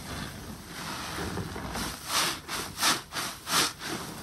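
Soapy bath sponge being squeezed and kneaded by rubber-gloved hands in a basin of foamy detergent water: a steady wet squishing for the first half, then three louder squelches about two-thirds of a second apart.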